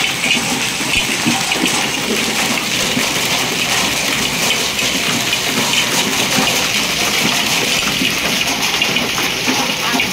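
Heavy rain mixed with hail falling steadily on a paved courtyard, a constant even rush of many small impacts.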